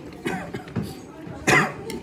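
A man coughing into his hand: a smaller cough near the start, then a loud, sharp one about one and a half seconds in.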